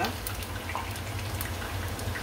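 Pieces of pork ear deep-frying in hot oil in a steel pot: a steady sizzle with many small scattered crackles and pops.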